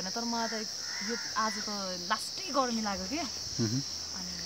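Steady, high-pitched drone of insects, with a woman talking over it.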